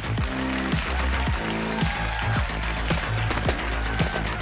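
Background music with a steady driving beat and deep sustained bass.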